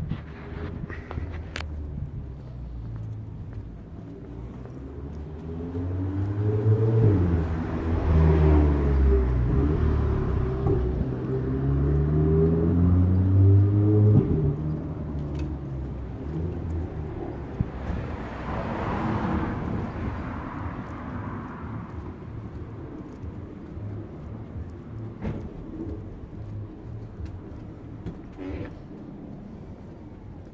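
A car engine running close by, its pitch climbing as it accelerates and loudest for several seconds before dropping away abruptly about halfway through. A few seconds later a second vehicle passes with a rise and fall of road noise.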